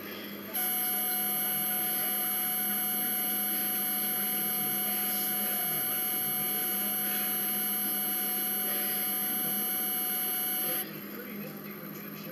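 A steady machine-like whine made of several fixed pitches, high and low. It starts suddenly about half a second in, holds level, and cuts off suddenly near the end.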